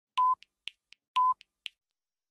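Clock time-signal countdown to the hour: two short, steady beeps one second apart, with faint ticks in between, about four a second.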